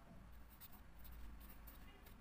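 Felt-tip marker writing on paper: faint, short scratching strokes.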